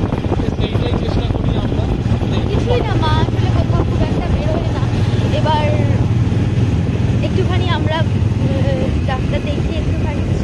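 Steady low rumble of wind and vehicle noise while riding through a street, with voices talking over it at intervals.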